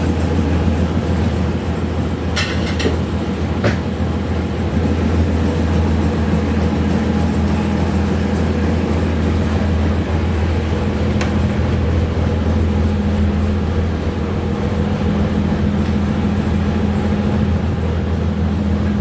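Houseboat engine running steadily under way, a loud, even low drone heard from inside the boat's wooden cabin.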